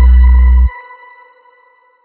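Electronic logo-outro jingle with heavy bass that cuts off abruptly under a second in, leaving a high ringing tone that fades away.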